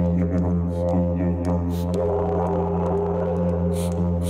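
Didgeridoo, a long green tube, played as a steady low drone whose overtones keep shifting as the player shapes the sound with his mouth. A couple of short hissing accents cut in, one midway and one near the end.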